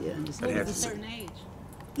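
Men's voices in soft conversation during the first second, trailing off into a quieter lull near the end.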